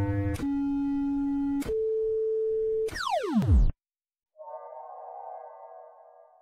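Electronic synthesizer intro sting: sustained synth tones that step to new pitches twice, then a steep falling sweep about three seconds in, a short silence, and a quieter buzzy chord that fades out near the end.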